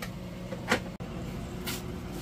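Quiet kitchen handling over a steady low hum: one light knock about a third of the way in and a brief soft brushing sound near the end, as a large kitchen knife is set against a half onion on a wooden cutting board.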